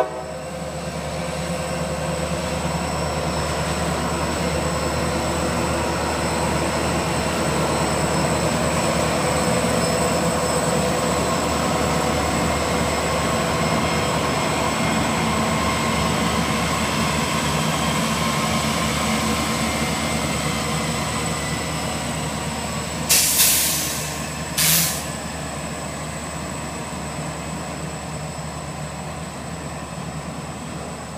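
A CSX freight train passing close by: the diesel locomotives' engines and wheels rumble steadily, building to their loudest about ten seconds in and then easing as the autorack cars roll past. Two short hisses come near the end.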